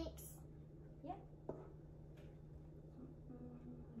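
Quiet kitchen with a steady low hum, broken by a couple of faint clicks and scrapes of a spatula and spoon against a metal mixing bowl of cake batter.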